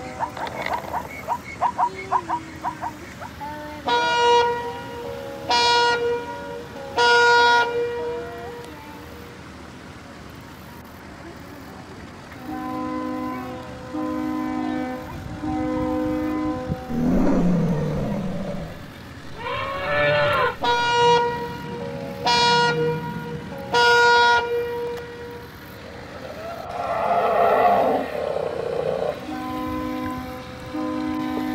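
Electronic horn sound effects from a battery-operated toy ship: groups of three short, loud toots, with a lower horn sounding three times between them and a quick rattle and other effect sounds mixed in.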